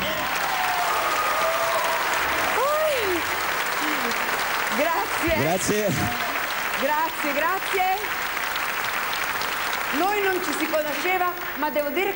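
Studio audience applauding steadily, with voices speaking over the applause.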